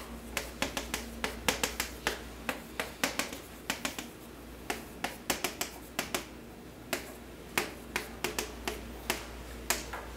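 Chalk on a chalkboard writing a column of digits and colons: many sharp taps and short scratches in quick irregular clusters, with brief pauses between the lines written.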